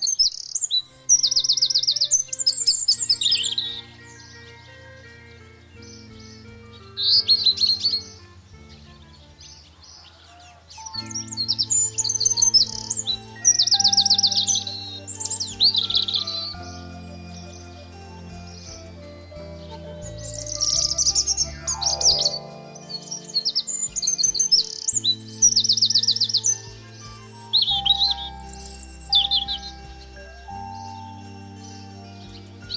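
Birdsong, repeated high chirps and rapid trills, laid over soft background music of long held low notes. Partway through, a single sliding note falls in pitch.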